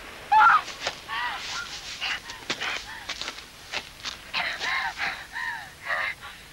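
Birds calling: repeated short calls that rise and fall in pitch, in two bunches, with a few sharp clicks in between.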